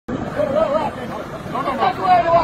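Several people's voices talking and calling out over one another, over a steady background noise.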